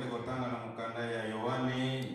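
A man's voice reading a Bible verse aloud in a slow, drawn-out, chant-like cadence, with long held pitches and few pauses.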